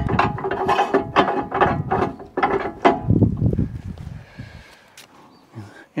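A log being rolled by hand on a bandsaw mill's steel bed against roller-topped log stops: a quick run of creaks, clicks and knocks for about three seconds that then fades away.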